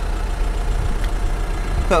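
Steady low rumble with no distinct events.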